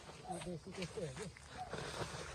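Faint, distant voices speaking in short broken phrases.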